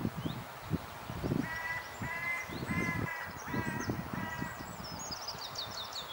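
A bird calling five times in an even series, about one call every two-thirds of a second, while a small bird's high, thin twittering song comes in near the end. Soft, low rustling sounds run underneath.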